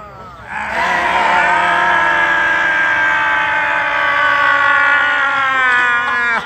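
A group of people holding one long, loud vocal shout together for about five seconds in a laughter-club exercise, several voices at different pitches sounding at once.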